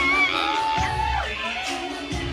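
Pop music playing loud in a nightclub: a sung vocal melody over a heavy bass beat.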